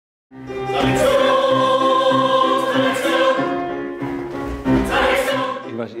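A choir singing in several voice parts, with held notes and swells in loudness, fading out near the end.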